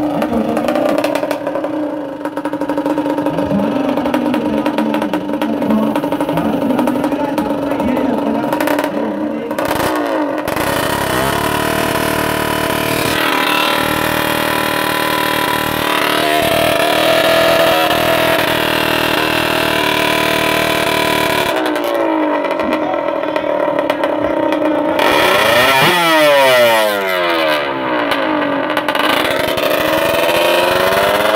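Small two-stroke drag-racing motorcycle engine running and being revved on the start line. It holds a steady note at first, then is held at higher revs from about a third of the way in, with the pitch sweeping down and back up near the end.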